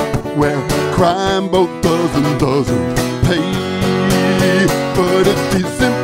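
A man singing to his own strummed acoustic guitar, a country-folk song played solo.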